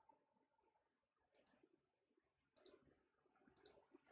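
Near silence broken by three faint, short computer mouse clicks about a second apart.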